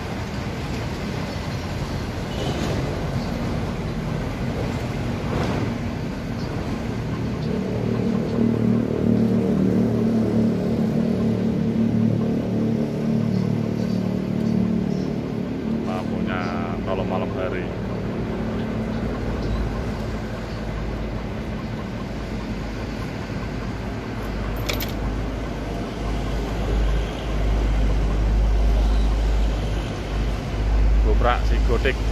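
Mitsubishi Fuso FM215 truck's 6D14 inline-six diesel engine running, louder and fuller from about a quarter of the way in. A deeper, heavier rumble comes in during the last third as the truck starts to move.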